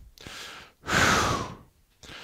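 A man's faint breath in, then a loud breath out, a sigh, about a second in, picked up close on a headset microphone.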